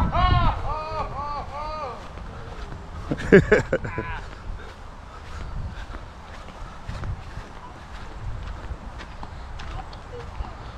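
A voice calling four or five short rising-and-falling notes in quick succession, then a short loud vocal outburst about three and a half seconds in. After that there is only low wind-like rumble with faint scattered clicks.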